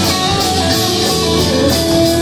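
Live band music: a violin playing held notes with keyboard over a steady beat.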